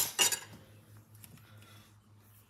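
A kitchen knife hits a hardwood floor with a sharp metallic clatter. It bounces once more about a quarter second in, then there are only a few faint small ticks.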